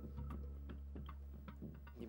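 Quiet background music: a low steady drone with a regular ticking, clock-like beat.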